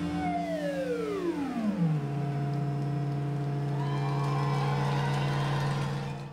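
Electronic music on a synthesizer: a tone glides steeply down in pitch over about two seconds and settles into a steady low drone. A higher wavering tone comes in about four seconds in.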